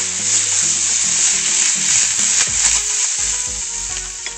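Hamburger patties sizzling steadily in a hot frying pan after a splash of margarita mix has gone in, with vegetables sautéing alongside.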